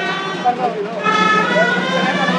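Shrill gralla (Catalan double-reed shawm) playing the tune that goes with the raising of a human tower, in long held notes: one note dies away at the start and a new, higher one enters about a second in. Crowd voices run underneath.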